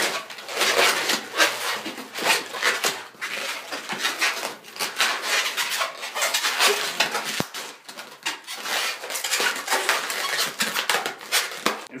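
Latex twisting balloons being handled and twisted by hand: the rubber rubs and squeaks in quick, irregular scrapes as a 260 balloon is worked into clip and pinch twists.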